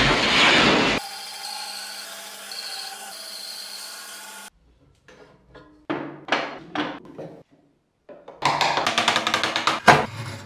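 A loud rushing noise cuts off after about a second. A few seconds of steady held musical tones follow. Then come a handful of separate knocks, and near the end a quick run of chisel strokes cutting wood.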